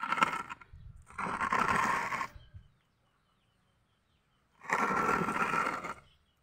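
A potted bonsai in a plastic tub being shifted and turned on a concrete slab: three scraping bursts, the first short and the next two each over a second long, with a pause between the second and third.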